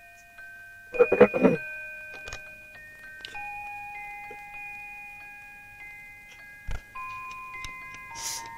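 An old clock's chime plays a slow tune of bell-like notes, each ringing on while the next one starts. There is a brief loud clatter about a second in and a single knock near the end.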